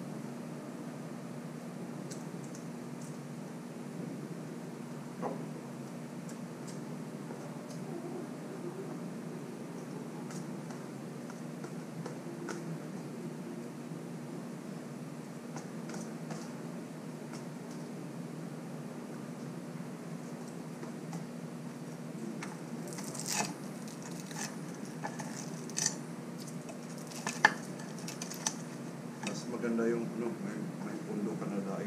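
Quiet eating: fingers scooping rice from a plastic tub, with light clicks and taps of the plastic, over a steady low hum. A burst of sharper clicks comes near the end.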